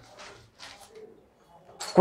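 Faint bird cooing in the background.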